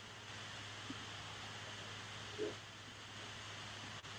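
Faint steady hiss with a low hum from an open microphone on a video call, with two brief faint sounds, one about a second in and one about two and a half seconds in.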